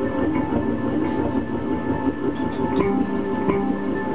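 Hurdy-gurdy playing, its drone strings holding steady tones under shifting notes, with occasional sharp clicks. Part of the sound is processed live with electronics.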